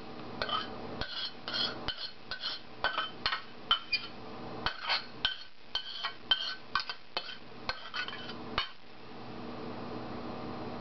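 A metal spoon scraping and clinking against a metal skillet and Corelle bowls as a bean and salsa mix is spooned out. Light, ringing metallic clinks come several times a second and stop about a second before the end.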